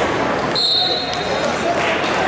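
A referee's whistle, one short high blast of about half a second, over the chatter of people around the mat. It signals the wrestlers to start from the neutral position.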